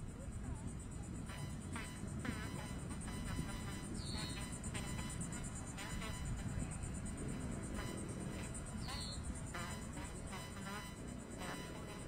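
Faint mission-control radio loop between calls: a steady low hiss and rumble with faint voices in the background and a short high chirp about every four to five seconds.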